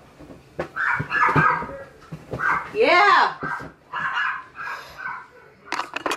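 A dog barking and yapping in short repeated bursts, with one long whine that rises and falls about three seconds in. A couple of sharp knocks come near the end.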